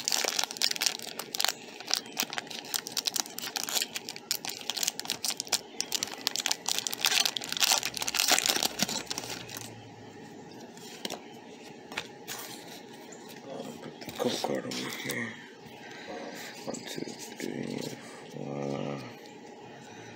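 Foil booster pack wrapper crinkling and tearing as it is opened, a dense run of crackles for about the first ten seconds; after that, softer sounds of trading cards being handled.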